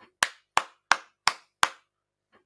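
A person clapping hands five times, slow and evenly spaced, about three claps a second.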